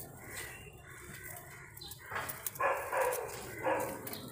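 A dog barking three times in the second half, in short calls close together.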